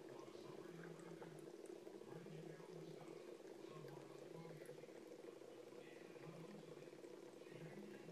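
Faint trickle of water running from a straw into a glass bowl, over a steady low hum.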